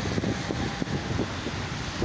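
Wind rumbling on the microphone as a steady deep buffeting, with city street traffic behind it.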